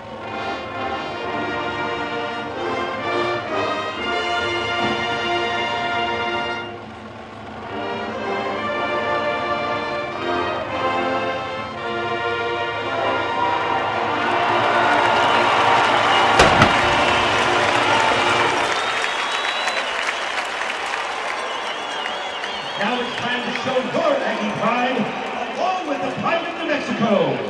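Marching band brass playing slow, sustained chords that build to a long, loud final chord. Crowd cheering and applause break out over the closing chord, with a single sharp crack about 16 seconds in.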